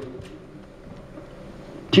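Faint, even room tone of a hall between a man's words. His voice trails off at the start and he resumes speaking near the end.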